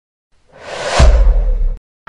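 Intro sound effect: a rising whoosh that lands on a deep boom about a second in, the low rumble holding until it cuts off abruptly just before the end.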